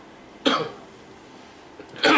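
A person coughing close to a microphone: one short, loud cough about half a second in, and another beginning right at the end.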